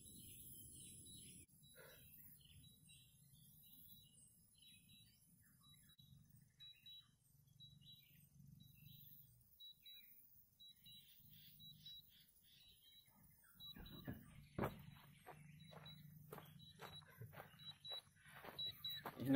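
Near silence with faint bird chirps. From about three-quarters of the way in comes a run of louder short thumps and scuffs: footsteps on a gravel road.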